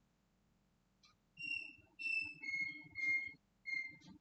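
Five clear whistled notes in a row, the first two higher and the last three a step lower at one pitch, each under half a second long.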